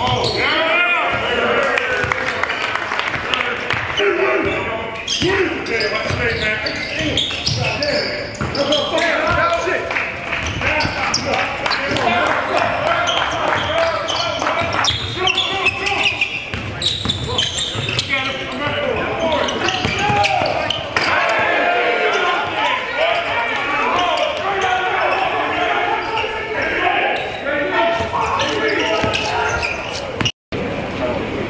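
Basketball bouncing and dribbling on a hardwood gym floor during a scrimmage, mixed with players' shouts and calls echoing in the large gym.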